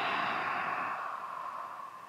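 A long, slow exhale through the open mouth, a breathy "haa" like fogging up a mirror, that trails off gradually. It is the out-breath of sitali (cooling) pranayama.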